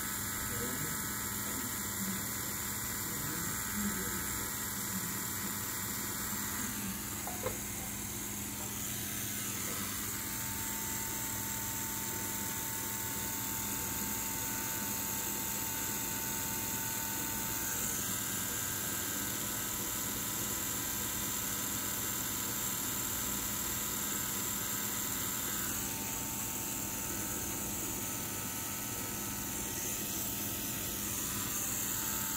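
Rotary tattoo machine running steadily, a continuous electric hum made of several even tones, as the needle works ink into skin. The hum shifts slightly in pitch a few times.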